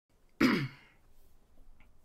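A man clears his throat once, a single short, loud burst that dies away within about half a second.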